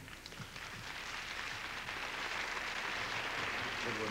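Audience applauding, a dense patter of clapping that builds over the first couple of seconds and then holds steady.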